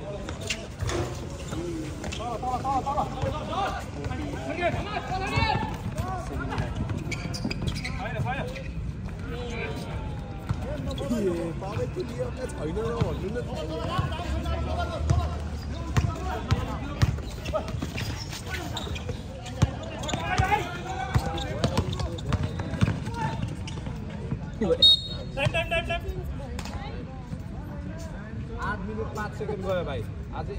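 Basketball bouncing and being dribbled on an outdoor concrete court, with repeated sharp knocks, under steady shouting and chatter from players and spectators. A brief shrill sound rises above the rest about 25 seconds in.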